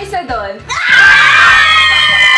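Several women shrieking together in excitement: after a moment of quick chatter, a loud high-pitched group scream starts under a second in and is held.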